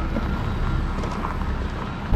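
A motor vehicle driving away, its low engine and road rumble slowly fading.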